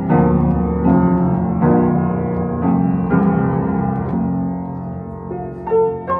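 Steger & Sons upright piano, unrestored and still on its original hammers and strings, being played in full chords in the lower and middle range. A chord is struck about once a second and left to ring, and a higher note comes in near the end.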